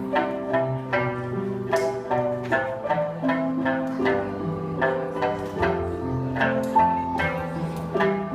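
Instrumental music with no singing: a plucked string instrument playing a quick melody, several notes a second, over sustained low notes underneath.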